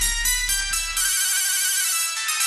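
High-pitched electronic melody in quick, bright notes, settling into a held chord about a second in. A low rumble fades out under it during the first second.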